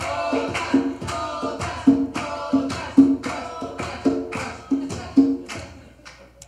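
Audience chanting "¡otra, otra!" for an encore in a steady rhythm, about two chants a second, with clapping on the beat; it dies away near the end.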